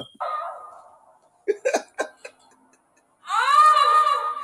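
A woman's loud, high-pitched cry, rising and then held, starts about three seconds in: an exaggerated moan-scream from a comedy skit played back. Before it come a few brief snickers.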